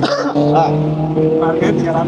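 Toyota Corolla's engine idling steadily, with voices over it.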